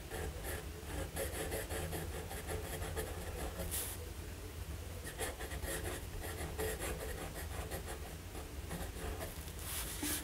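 Fine steel nib of a Waterman Allure Deluxe fountain pen writing on Rhodia dot-pad paper: a run of short, irregular scratching strokes as letters are formed, over a low steady hum.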